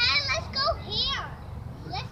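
Young children's high-pitched voices calling out in short bursts at play, most of them in the first second or so.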